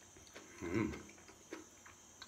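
A person chewing crunchy napa-cabbage kimchi with the mouth closed: soft crunches about every half second, with one louder, longer low sound from the mouth near the middle.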